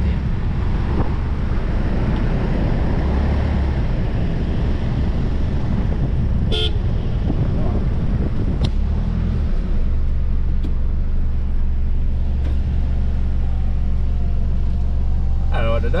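A four-wheel drive's engine running, with a heavy, steady low rumble of wind and cab noise on the microphone. About six and a half seconds in comes one short, sharp toot.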